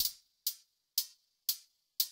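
Farbrausch V2 software synthesizer playing an 808-style hi-hat patch: short, bright hi-hat hits about two a second, each dying away quickly.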